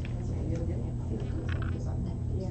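Faint, indistinct speech from people in the room over a steady low hum.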